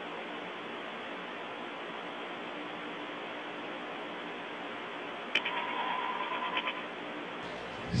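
Steady hiss of the open air-to-ground radio link from the Soyuz crew cabin, with no one talking. About five seconds in there is a click, followed by a faint buzzing tone lasting about a second.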